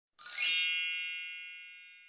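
A single bright chime sound effect that strikes once and rings out with several high tones, fading away over about two seconds.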